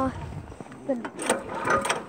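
Indistinct talking in short snatches, with a few sharp clicks; no engine is running.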